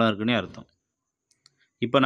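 A man talking, breaking off about half a second in to a pause of near silence broken only by a couple of faint ticks, then talking again near the end.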